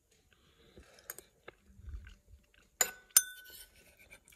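Metal spoon clinking twice against a bowl near the end, the second clink ringing briefly, after a few faint scrapes and soft chewing of the pasta.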